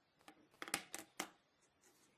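Smartphones being set down on a wooden tabletop and handled: a handful of light taps and clicks about a second in.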